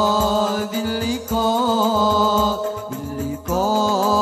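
Male vocalists singing an Arabic devotional qasida in long, held notes that bend and waver in pitch, over a steady low drum beat.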